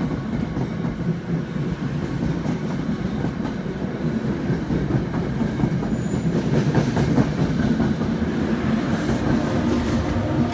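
NJ Transit passenger train pulling out, its cars rolling past close by with a steady rumble and a light clicking of wheels over the rail joints. Near the end, the electric locomotive pushing at the rear comes alongside.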